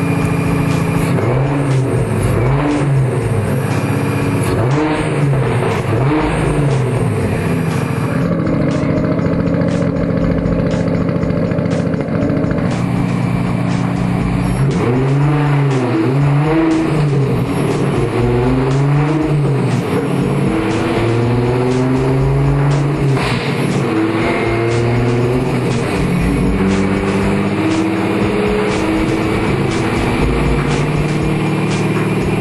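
A 600 hp turbocharged VW Golf engine on a dyno, revved up and down over and over, with spells where the revs are held steady in between.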